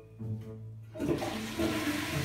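A toilet with a concealed wall cistern and dual-flush plate being flushed: a rush of water starts suddenly about a second in and keeps going.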